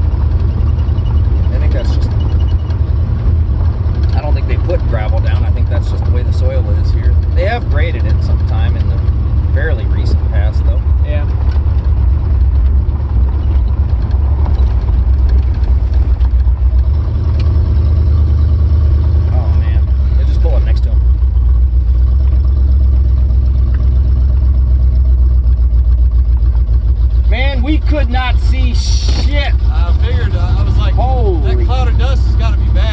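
Heavy, continuous low rumble of a roofless Lincoln under way: engine, road and wind noise on the open car's microphone. A little past halfway it settles into a smoother, steadier drone.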